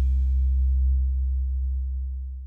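The last sustained note of a dub reggae track: a deep, steady bass tone held on while the higher sounds die away in the first second, the whole slowly getting quieter.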